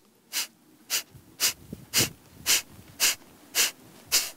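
A woman's short, sharp exhalations through the nose, seven in a row at about two per second, each pushed out by a quick pull-in of the diaphragm in a yogic cleansing breath.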